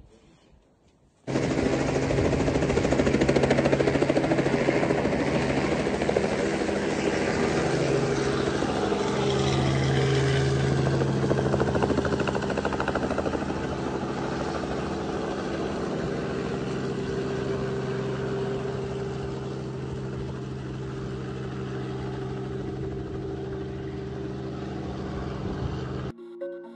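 Small two-bladed light helicopter flying low: a steady rotor and engine drone. It starts suddenly a little over a second in after near silence and grows gradually fainter in the second half.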